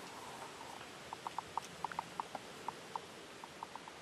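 A quick, uneven run of short, high chirps from a small animal, starting about a second in, over a faint steady outdoor hiss.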